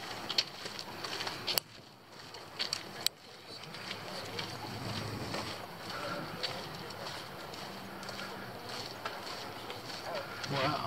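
Footsteps on a dirt forest trail and the rustle of a hand-held camera as hikers walk, with a few sharp clicks in the first three seconds. Faint voices can be heard from the middle on.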